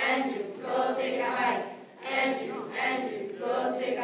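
A group of schoolchildren chanting song lyrics together in unison, in short rhythmic phrases.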